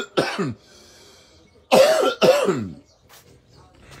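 A man coughing: one cough right at the start, then two loud coughs close together about two seconds in.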